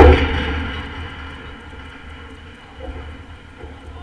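A sudden loud knock right at the camera, ringing briefly and fading away over about a second, over a steady low rumble.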